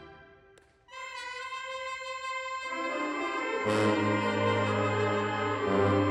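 High school marching band brass in a gymnasium. The previous chord is cut off and dies away; about a second in, a single high held note enters. Lower horns join just before the three-second mark, and sousaphones come in underneath at about three and a half seconds, building a full sustained chord.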